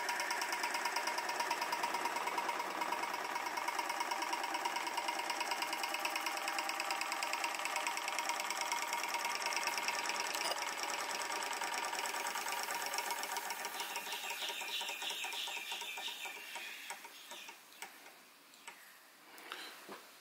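Huxtable hot air (Stirling) engine running steadily, with a fast, even mechanical rhythm from its piston and crank. The sound fades away over the last few seconds.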